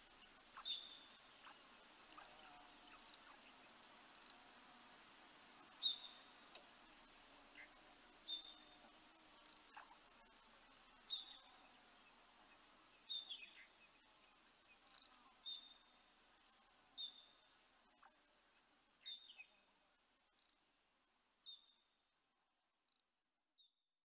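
Faint nature ambience: a steady high-pitched insect drone with short high chirps every second or two. It fades out near the end.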